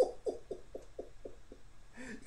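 A man's laughter trailing off: a run of short, quiet falling hoots, about four a second, that fade out about a second and a half in.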